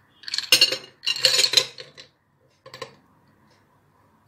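Ice cubes dropped by hand onto a glass plate, clattering and clinking against the glass in two bursts about a second long each. A brief clink follows near three seconds in.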